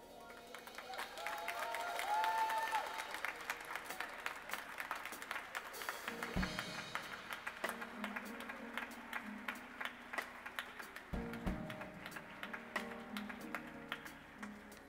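Congregation applauding after a choir's song, the clapping swelling about two seconds in and running on. A keyboard plays low held chords underneath, coming in about six seconds in and again about eleven seconds in.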